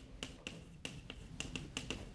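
Chalk clicking and tapping against a blackboard as words are written by hand: a faint, quick, irregular run of about a dozen light clicks.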